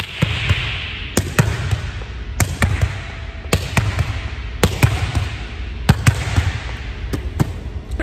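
A volleyball being hit again and again against a gym wall. It gives sharp smacks in quick pairs about once a second, each followed by a hall echo.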